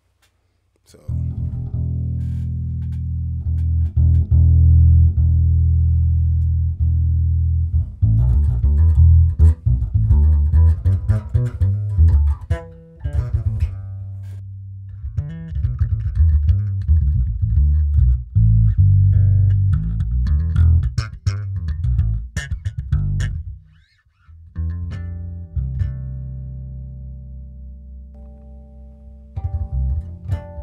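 Electric bass guitar played through a ToneX One and Zoom B6 rig blended with a miked bass amp cabinet. It starts about a second in with long held low notes, moves into a busier line from about 8 s, stops briefly near 24 s, then plays notes with brighter upper overtones.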